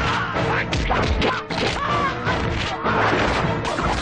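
Movie fight-scene sound effects: a rapid string of punch and kick hits over the film's background music.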